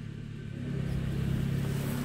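Soft-top pump motor of a 1998 Saab 9-3 convertible running with a steady low hum that grows louder about half a second in, as the roof is trying to rise but is stuck partway up.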